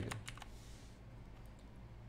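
Computer keyboard typing: a cluster of keystrokes at the start, then a few faint scattered clicks over quiet room tone.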